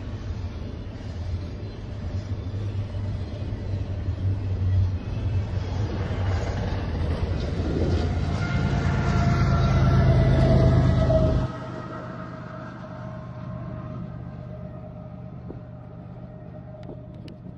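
Canadian Pacific double-stack container train passing: a steady rumble of wheels on rail. A diesel locomotive at the tail of the train then goes by, its engine and a whine building to the loudest point. The sound drops off sharply about eleven seconds in, leaving a fading rumble and whine.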